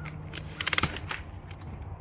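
Telescoping handlebar of an ABC Design Viper 4 stroller being pulled out: a quick run of sharp clicks as it slides through its adjustment positions, strongest in the first half.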